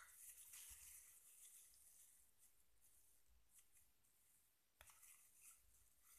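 Near silence, with a single faint click a little before the end.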